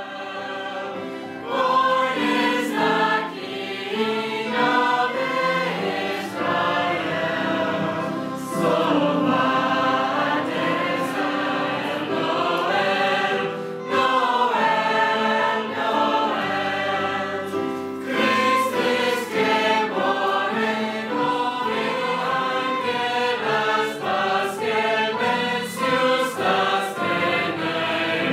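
Mixed teenage choir of boys and girls singing a Christian song, here a verse in German, many voices together in harmony.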